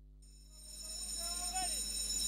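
Live sound from the racetrack's starting gate fading in, carrying a steady high-pitched electrical whine. A short distant call that rises and falls comes about midway.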